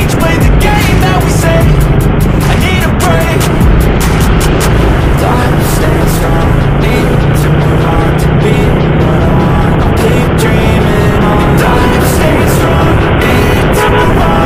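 Background music with a steady beat, laid over the sound of a motorcycle riding in traffic.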